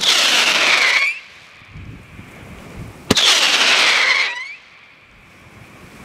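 Europla 2-inch whistle candle firing two whistling shots about three seconds apart. Each starts with a sharp pop and becomes a loud whistle of about a second that falls in pitch and turns up briefly before it stops.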